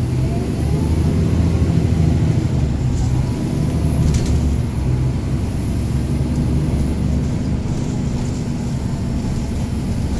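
A NABI 40-SFW transit bus's Caterpillar C13 diesel engine heard from inside the cabin, pulling away from a stop: the engine note builds in the first second or two with a whine rising in pitch, then settles to steady running as the bus rolls on, with a couple of sharp clicks from the cabin a few seconds in.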